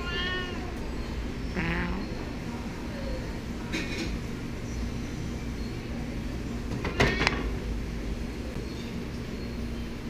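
Tabby cat meowing about four times in short calls, one falling in pitch just before two seconds in, the loudest about seven seconds in.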